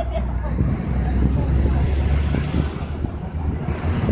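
Steady low hum of an idling vehicle engine under the chatter of a crowd of people.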